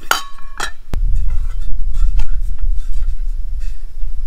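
Metal frying-pan ground pod ringing briefly with a clink as the gimbal head knocks against it, then a sharp click about a second in and faint scraping ticks as the head is screwed onto the pan.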